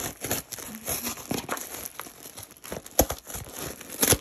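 Cardboard shipping box being cut open at the top with scissors and its flap pulled back: irregular crinkling, scraping and tearing of cardboard, with a sharp knock about three seconds in.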